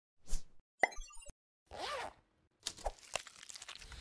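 Short animated-logo sound effects: a pop, a click with a brief high sparkle, a swelling whoosh that bends in pitch, then a few sharp ticks.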